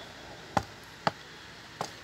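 Three small, sharp clicks of plastic parts on a toy car transporter trailer as its hinged rear ramp is lowered and the trailer is handled.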